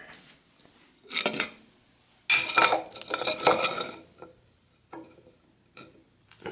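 A wooden spacer strip being handled against concrete cinder blocks, knocking and scraping as it is slid into a gap between them. There is a short bout about a second in, a longer, louder one around the middle and a couple of light knocks near the end.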